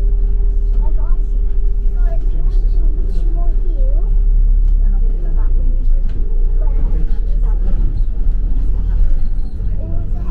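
A double-decker bus running, heard from inside: a deep steady rumble with a steady hum over it that drops out about four seconds in and comes back slightly higher in pitch for a few seconds, while passengers talk indistinctly.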